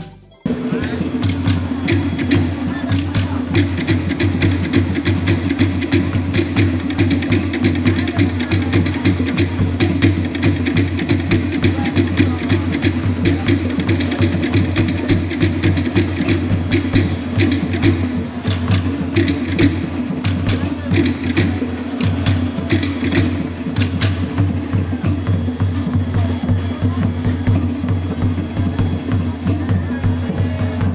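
Fast percussion music: rapid, woody clicking strikes over a steady low drum pulse, starting suddenly about half a second in.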